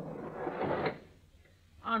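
Radio-drama sound effect of a cabin door scraping open, a noisy rasp of about a second that builds and cuts off sharply.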